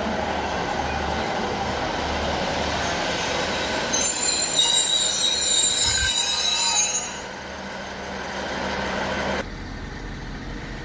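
A two-car diesel multiple unit pulls out, running steadily over the rails. About four seconds in its wheels squeal in high, ringing tones for around three seconds, then the sound dies down. Near the end it cuts off suddenly to a quieter station background.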